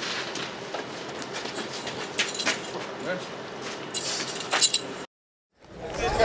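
Commotion of scuffling and raised voices, with scattered knocks and metal clinks and a couple of sharp, loud bangs about four and a half seconds in. The sound cuts off abruptly just after five seconds.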